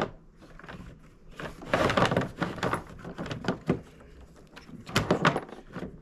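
A kayak's anchor trolley cord being pulled through its pulleys and rings in a few long strokes, giving irregular bursts of rope rasping with small clicks and knocks against the plastic hull. The pulling draws the trolley ring along the side of the kayak.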